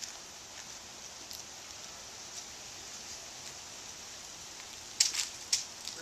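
Steady faint outdoor background hiss, with a short burst of sharp crackling clicks about five seconds in.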